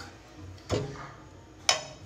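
Two sharp clicks about a second apart, with the second one louder: a utensil knocking against a cooking pan as butter is put in.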